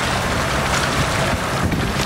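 Boat engine running steadily under wind noise on the microphone and sea-water wash, with splashing as a hooked bluefin tuna thrashes at the hull near the end.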